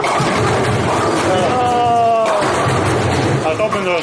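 Bowling alley din: a steady low rumble of balls rolling and pins clattering on the lanes, with a person laughing near the middle.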